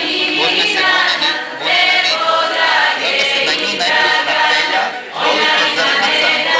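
A group of voices singing together in harmony, in sung phrases broken by short breaths about a second and a half in and again about five seconds in.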